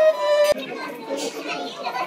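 A violin and cello duet ends on a long held violin note that cuts off suddenly about half a second in. After that come the chatter of passers-by and children's voices in a busy street.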